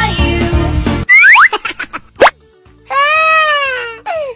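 Children's-song backing music cuts off about a second in. Cartoon sound effects follow: a few quick sliding whistle-like swoops, a short pause, then a loud, long wailing baby cry near the end.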